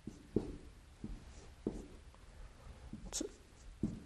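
Dry-erase marker writing Chinese characters on a whiteboard: a series of short, separate strokes and taps, with a sharper squeak a little after three seconds.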